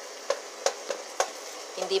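Chicken pieces and garlic sizzling in hot oil in a pan while a wooden spatula stirs them, knocking sharply against the pan four times.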